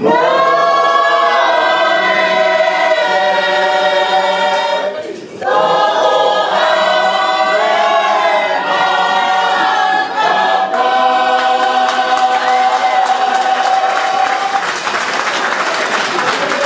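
Tongan church choir singing a hymn unaccompanied in full harmony, with a short break for breath about five seconds in. Near the end the choir holds one long chord, which then stops.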